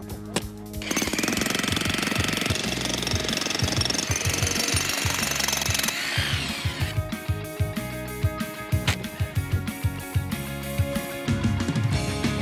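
Jackhammer breaking up frozen ground to dig out a tree's root ball. It runs steadily from about a second in for some six seconds, over background music, and then stops while the music carries on.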